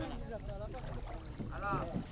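Faint outdoor background of low wind noise on the microphone and distant voices from a paddling crew seated in a long wooden boat at the water's edge, with one voice calling out briefly near the end.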